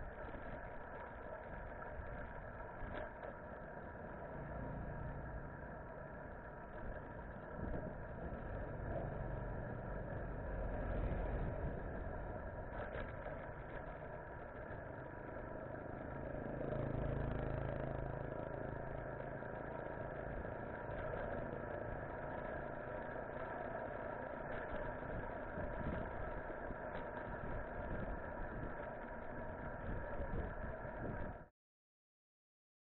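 Steady road and wind noise from riding a bicycle along a paved road, with a constant hum and low rumbling that swells twice.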